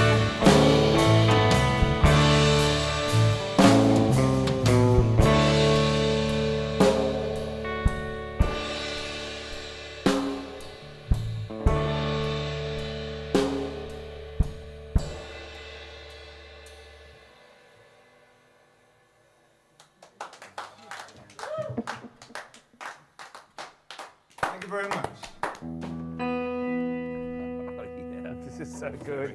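Live rock band playing, with drum kit strikes, cymbals and electric bass. The song winds down, getting steadily quieter over about fifteen seconds, and the last notes fade out. After a few seconds of scattered short knocks, a guitar is strummed near the end.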